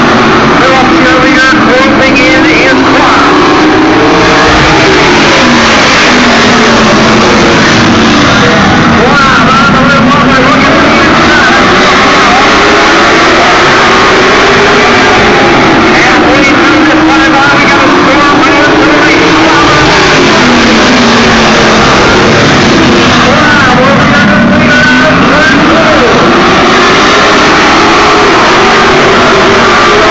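Pack of late model stock cars racing on a paved oval, very loud. The engine note rises and falls in long sweeps every several seconds as the cars accelerate down the straights and ease off into the turns.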